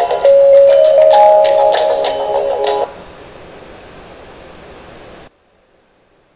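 Short closing music of an online educational video, played back in a small room, with held notes ending about three seconds in. Only a faint hiss follows, and it cuts off about five seconds in.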